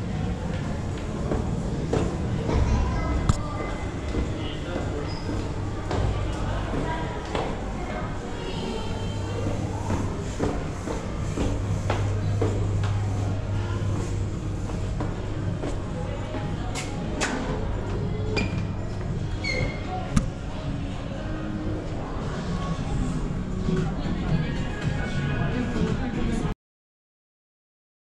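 Footsteps going down stairs and along a hard floor, irregular knocks and thumps over a steady low hum, with indistinct voices and music in the background.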